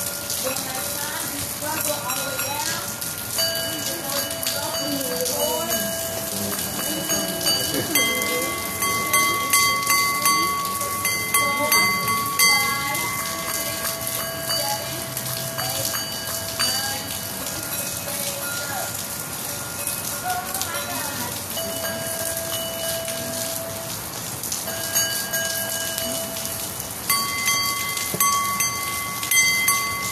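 Crystal singing bowls ringing: several long, steady tones at different pitches that start and fade at different times and overlap. Steady rain falls underneath.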